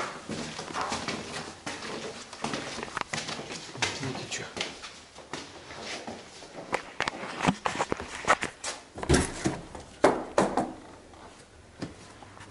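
Footsteps on stairwell steps with scattered knocks and clatter, and indistinct voices in the background.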